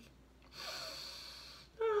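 A woman acting out sleep: a long, hissy in-breath, then a sighing 'ah' that slides down in pitch near the end.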